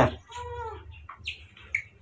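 A baby macaque calling: a short, slightly falling coo under a second in, then a few brief high squeaks in the second half.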